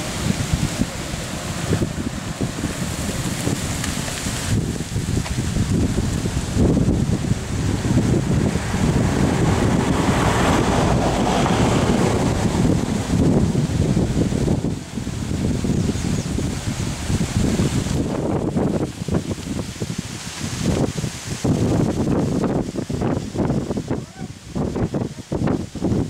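Wind buffeting the camera's microphone: a loud, gusting rush heaviest in the low end, breaking up into choppier gusts near the end.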